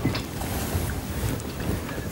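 Steady low rumbling noise with a faint hiss over it, and a brief tick just after the start.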